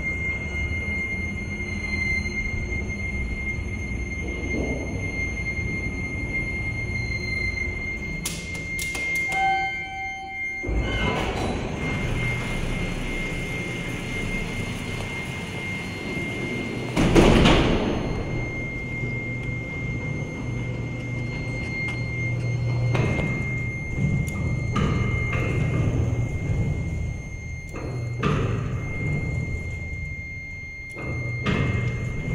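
Freight elevator running, with a steady high-pitched hum. About a third of the way in come a few clicks and a short electronic tone, then a low thud as the car stops. Around the middle a loud rumbling burst comes as the doors open, followed by a steady low machine hum.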